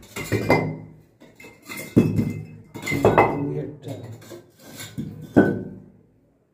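Metal snake hook knocking against and shifting loose bricks on a concrete floor: a run of sharp clanks with a short metallic ring, one of the loudest near the end.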